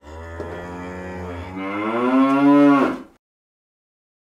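A cow mooing: one long moo of about three seconds that rises in pitch and grows louder in its second half, then breaks off.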